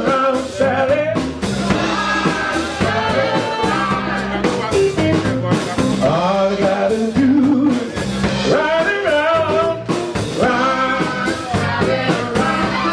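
Live soul band playing: a male singer's vocals over electric bass, electric guitar and drum kit, with a steady beat.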